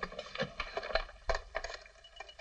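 A quick, irregular series of light knocks and clicks, about half a dozen in two seconds.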